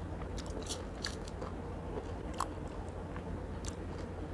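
A person chewing orange segments close to a clip-on microphone: irregular small wet clicks and crunches.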